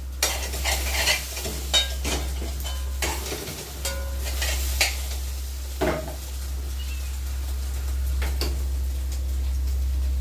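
Food sizzling in a frying pan, with a metal utensil scraping and knocking against the pan as it is stirred: a run of short strokes in the first two seconds, then single knocks around five, six and eight seconds in.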